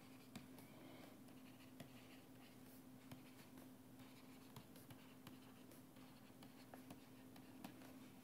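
Faint taps and scratches of a stylus writing on a pen tablet, over a steady low hum.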